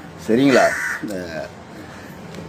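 A crow cawing in the background alongside a man's brief words.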